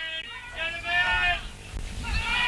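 Distant shouting voices at a football ground: a short high-pitched call at the start, then a longer drawn-out call in the middle.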